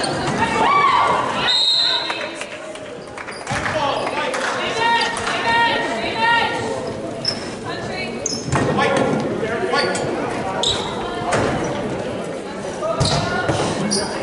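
Basketball game in a gym: a ball bouncing on the hardwood floor among many short impacts, with unintelligible voices of players and spectators, all echoing in the large hall.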